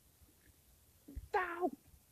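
A soft thump about a second in, followed at once by a short high-pitched vocal cry that falls in pitch: a person voicing a cartoon character's yelp.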